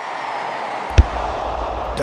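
Intro sound effect: a rush of noise swelling up, then a single sharp hit about a second in, with a low rumble carrying on after it.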